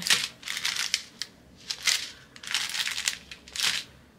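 Clear plastic wrapping on a diamond painting canvas crinkling in several short bursts as it is handled.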